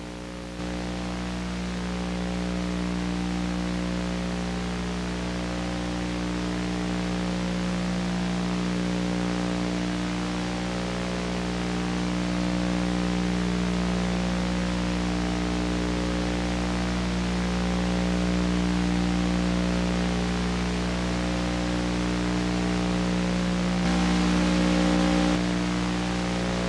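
Steady electrical hum with a stack of buzzing overtones under a constant hiss, unchanging throughout.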